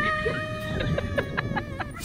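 Chickens clucking: a quick run of short clucks in the second half.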